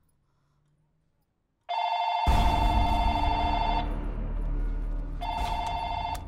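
A phone ringing twice: an electronic double-tone ring starts suddenly about two seconds in, pauses, and starts again near the end. A deep low rumble sets in just after the first ring begins and carries on under it.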